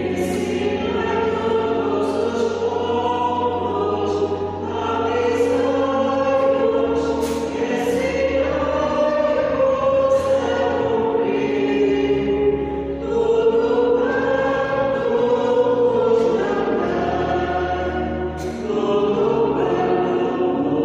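A group of voices singing a slow sacred song in several sustained lines over steady low bass notes that shift every few seconds, in a large stone church.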